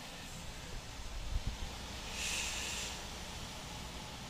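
Steady low road and engine rumble heard inside a Volvo 730 semi truck's cab at highway speed, with a low thump about a second and a half in and a brief hiss a little after two seconds.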